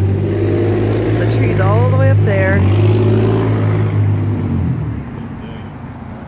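A motor vehicle's engine running close by with a steady low hum, fading away about five seconds in.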